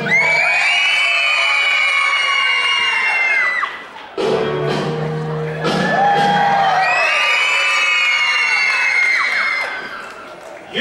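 Loud music with two long held chords, each lasting about three and a half seconds with a lower steady tone between them, over an audience cheering and children whooping in a large hall.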